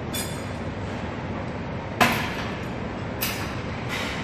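Steady gym background rumble, with a sharp knock about two seconds in and a lighter one just after three seconds, from the phone being handled as it is turned down toward the floor.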